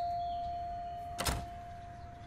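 The last note of an electronic doorbell chime, one steady tone slowly fading away, with a single short click about a second in.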